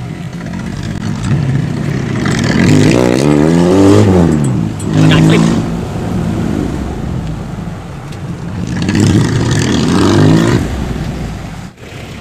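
Vehicle engine accelerating hard through the gears. The revs climb to a peak about four seconds in, drop at a shift, then climb again around nine to ten seconds in.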